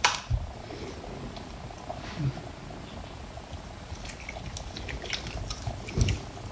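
Lathered, soapy hands rubbing and squeezing together, giving soft squishy wet sounds with scattered faint crackles. The loudest moment is a brief wet smack right at the start.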